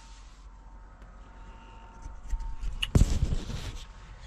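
Low steady hum in the truck cab, then rustling and clicks as the camera is handled and moved, with one sharp knock about three seconds in as it is set in place.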